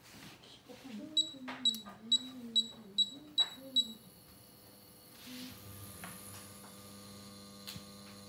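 Miele KM5975 induction cooktop's touch controls beep seven times in quick succession, about two and a half beeps a second, as the cooking zone is stepped up to power level 9. About five seconds in, the zone starts heating the stainless steel pan and a steady electrical hum with a faint high whine sets in.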